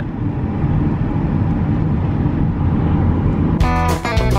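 Steady low road rumble heard from inside a moving car's cabin. Guitar music comes in near the end.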